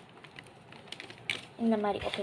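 A plastic packet rustling, with a few light clicks, as white powder is shaken out of it into a small bowl. A woman's voice starts near the end.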